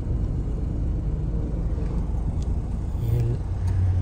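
Car engine running, heard from inside the cabin as a steady low rumble.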